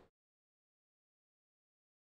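Complete silence: the audio drops out entirely.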